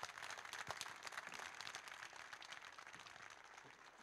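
Faint audience applause, many hands clapping, slowly dying away toward the end.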